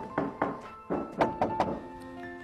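A run of about six thuds, unevenly spaced, over soft background music with long held notes.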